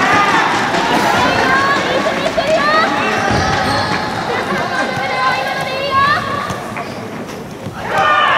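Voices in a sports hall during a pause between points of a soft tennis match: players and spectators calling and chattering, mixed with short high squeaks. It quiets a little near the end.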